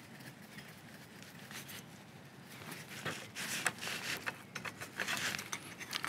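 Faint handling noise from a canister stove being put together: light clicks and rustles as the MSR Windburner burner is screwed onto its gas canister and the canister stand is fitted, mostly in the second half.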